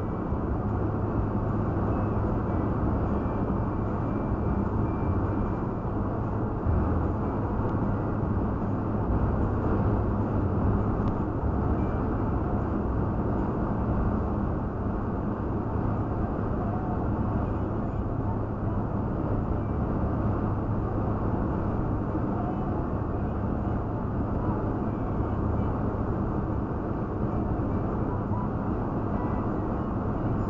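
Steady road and engine noise from a moving vehicle, heard from inside the cabin as a constant low hum with no change in pace.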